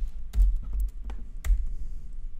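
Keystrokes on a computer keyboard: about half a dozen separate clicks over the first second and a half, most of them bunched in the first second.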